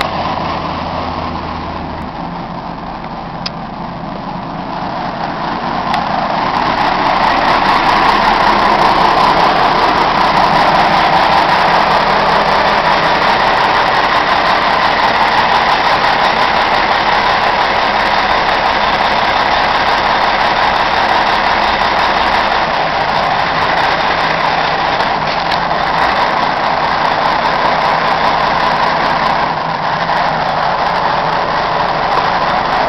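Caterpillar 980C wheel loader's diesel engine running steadily. It grows louder about six seconds in and holds there.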